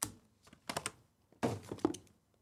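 Cardboard trading-card hobby boxes being handled on a table: a sharp knock at the start, then a few lighter taps and clicks.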